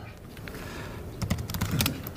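Laptop keyboard being typed on: a quick run of sharp keystrokes about a second in, entering a password.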